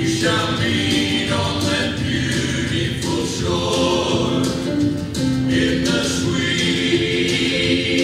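A choir singing a slow gospel hymn, with long held notes.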